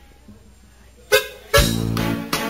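A band starts the instrumental intro of a song: a near-quiet pause, then a sharp loud chord about a second in and the full band with a strong bass line coming in about half a second later.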